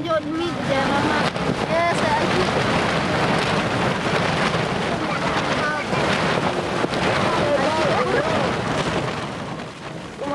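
Storm wind and heavy rain on a hut's cloth covering: a loud, steady noise that eases near the end. Girls' voices speak faintly under it.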